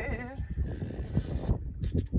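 Fishing reel drag buzzing briefly as a hooked fish pulls line off against the bent rod, from a little after half a second to about a second and a half in, over wind rumble on the microphone.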